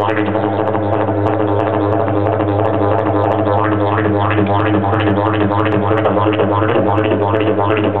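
Didgeridoo played solo: one low, unbroken drone with its overtones shifting in a quick, even rhythm.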